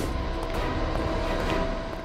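Dramatic background score: a low, steady rumbling drone with faint held tones above it, coming in sharply at a scene change.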